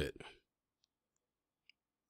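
The end of a man's spoken sentence trails off, then near silence with a few faint, tiny clicks.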